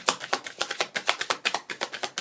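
Kipper and Lenormand fortune-telling cards shuffled overhand by hand: a quick, even run of card clicks and slaps, about ten a second.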